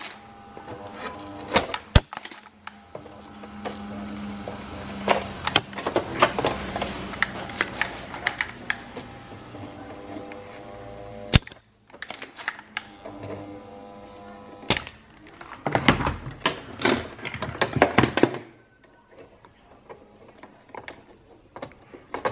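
A mains soldering iron run from a battery inverter hums with a steady buzz, because the inverter does not put out a clean sine wave. Sharp snaps of a spring desoldering pump and clicks from the circuit board being handled sound over the hum. The hum stops a few seconds before the end.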